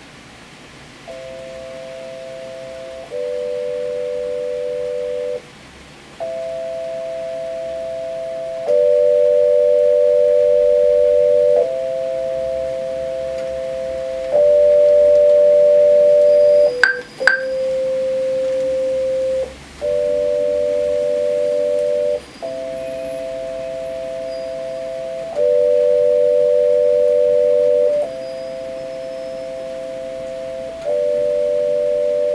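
Electronic keyboard playing slow two-note chords, each held for two or three seconds before moving to the next, over the steady hiss of heavy rain. A brief click sounds about seventeen seconds in.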